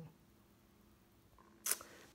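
Quiet room tone, then a single short, sharp click with a little rustle after it, about three-quarters of the way in.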